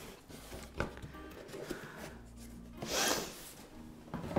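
Cardboard box being handled on a wooden tabletop: a light knock about a second in, then a short scrape of cardboard near three seconds in.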